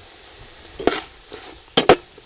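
A metal ladle scrapes against the bottom and sides of an aluminium pot while frog meat, chillies and lemongrass are stir-fried, with a faint sizzle underneath. There is one scrape about a second in and two sharp ones close together near the end.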